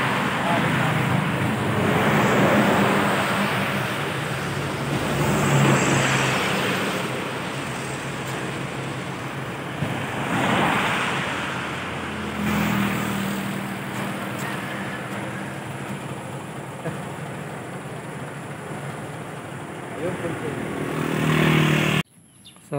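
Road traffic passing on a highway: vehicles, including a motorcycle, go by one after another, each swelling and fading, some with a low engine hum. Another vehicle comes up loud just before the end.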